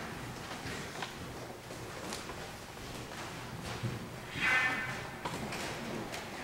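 Quiet handling noise of musicians resettling between pieces: sheet music being moved, with scattered small taps and knocks, and a short high-pitched squeak about four and a half seconds in.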